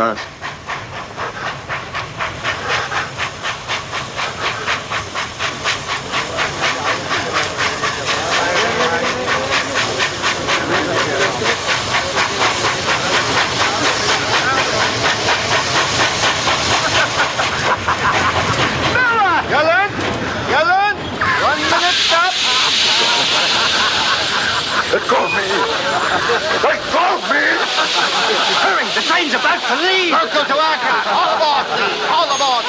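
Steam train running with a fast, even rhythmic beat that grows louder over the first several seconds and then holds steady. A loud hiss of steam joins in about two-thirds of the way through.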